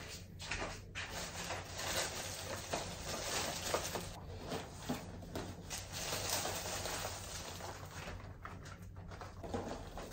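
A thin plastic carrier bag and foil snack packets crinkling and rustling as they are handled and pushed around, with many short sharp crackles.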